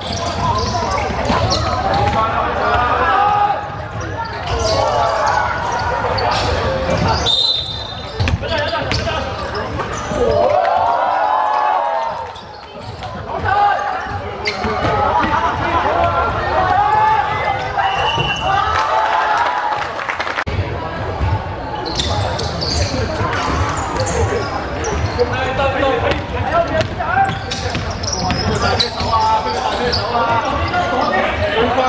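Basketball game sounds in a reverberant sports hall: a basketball bouncing on the hardwood court as it is dribbled, under the voices of players and spectators calling out. Two brief high squeaks or whistles are heard.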